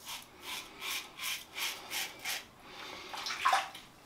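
Titanium safety razor with a Gillette Red Stainless blade scraping through lathered stubble on the cheek in a run of short strokes, about three a second.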